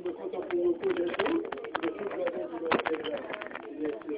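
Many people talking at once in a church hall as a service breaks up, a murmur of overlapping voices with no single speaker, dotted with short clicks and knocks.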